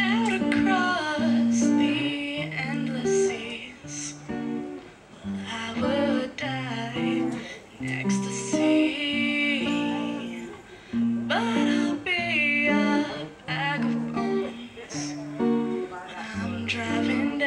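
A woman singing to a strummed acoustic guitar, her phrases broken by short pauses while the guitar chords change steadily beneath.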